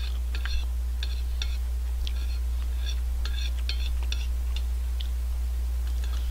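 Eating with a spoon close to the microphone: small irregular clicks of the spoon against the plate and mouth sounds of chewing, several a second, over a steady low electrical hum.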